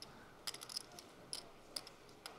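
A few faint, irregular clicks: about half a dozen short, light ticks spread through two seconds over quiet background hiss.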